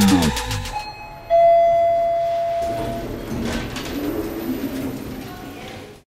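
Music sliding down in pitch and cutting out, then a single elevator chime dings about a second in and rings on, fading slowly over several seconds.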